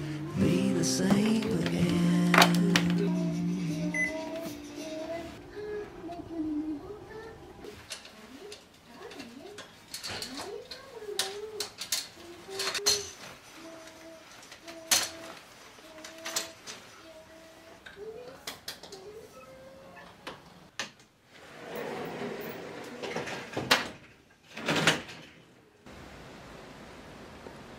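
Background music fading out over the first few seconds, then a quiet, sparse melody under scattered sharp clicks and knocks of household handling, and a short rustling swell near the end.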